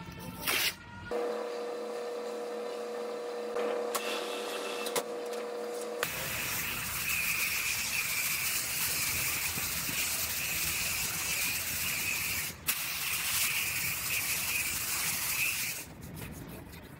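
Paint spray gun hissing as it sprays the fender, in two long passes with a brief break between them. Before that, a steady hum plays for about five seconds.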